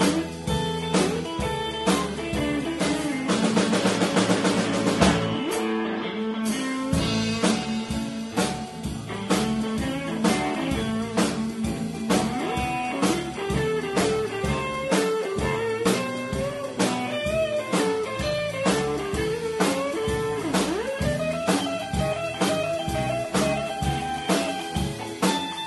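Live blues-rock band playing an instrumental break: electric guitar over drum kit and keyboard, with a fast repeated figure a few seconds in and a bent guitar note near the end.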